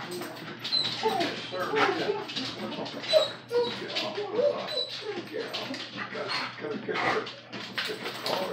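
A dog whining and whimpering over and over in short, wavering cries, excited at the prospect of a walk.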